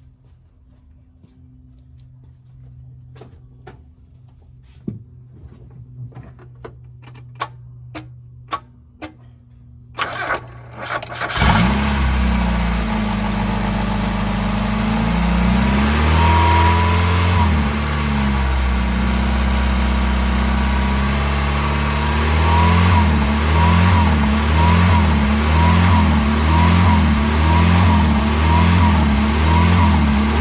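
A series of sharp clicks and knocks, then about a third of the way in the 1990 Mazda Miata's 1.6-litre four-cylinder cranks briefly and starts. It runs with its idle hunting, the revs rising and falling about once a second in the second half: the up-and-down idle that the replacement air valve has not cured.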